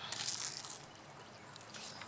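Cucumber vine leaves rustling and crackling as they are brushed, a brief burst in the first second that then fades to faint rustling.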